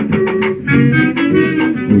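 Old band recording of clarinet and saxophone playing a melody of short held notes.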